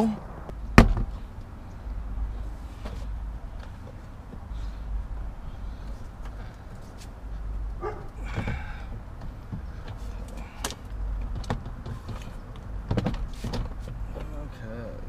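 Plastic retaining clips of a car's interior door panel snapping loose as the panel is levered off with a plastic pry tool: one sharp snap about a second in, then scattered lighter clicks and knocks as the panel is pulled away, over a low rumble.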